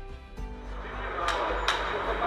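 Broadcast sound of a badminton hall between points: a steady arena hum with background music. Two sharp taps come about half a second apart, a little past the middle.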